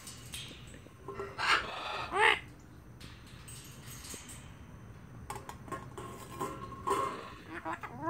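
Corellas calling at close range: two louder, bending calls a second or two in, then a run of shorter, quieter notes in the second half.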